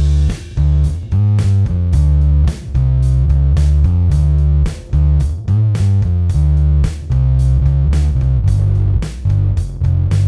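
Electric bass (a Gibson SG bass) played through a Sinelabs Basstard fuzz pedal, a replica of the Colorsound Bass Fuzz: a busy riff of fuzz-distorted notes with strong low end and short breaks between phrases.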